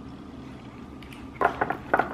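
Low steady room hum, then about a second and a half in a whisk starts beating pancake batter in a glass mixing bowl: a quick run of clicks and taps against the glass.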